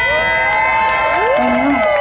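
Concert audience cheering, with several voices holding long high shouts at once.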